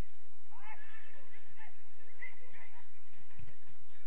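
Players shouting and calling out across a football pitch, raised voices rising and falling in pitch, with a short low thud about three and a half seconds in.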